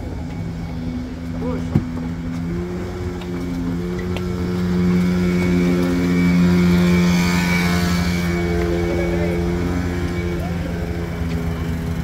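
Engines running with a steady drone made of several held pitches, swelling louder with a hiss about five to eight seconds in. A single sharp knock comes about two seconds in.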